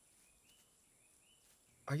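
Faint outdoor background with soft, high chirps repeating about twice a second.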